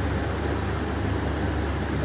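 Steady low hum with a faint even hiss of room background noise, no speech.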